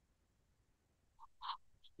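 Near silence, then about a second and a half in a short, faint, breathy throat sound: the Arabic letter Ḥā voiced as a sharp 'ḥa' pressed from the middle of the throat.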